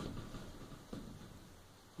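Paper towel wiping along a shower enclosure's metal bottom track: a faint rubbing, twice, at the start and again about a second in.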